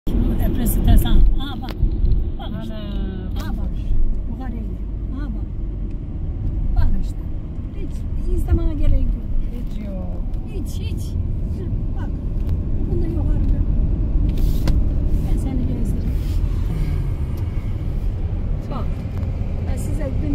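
Cabin rumble of a Fiat Egea Cross 1.6 Multijet diesel car driving on a town road: steady engine and tyre noise heard from inside the car.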